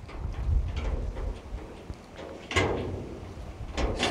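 Metal gate and its lock being worked by someone struggling to open it: rattling, with sharp knocks about two and a half seconds in and near the end.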